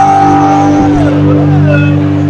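Live rock band with distorted electric guitars holding a loud sustained chord. A high held note slides down about a second in.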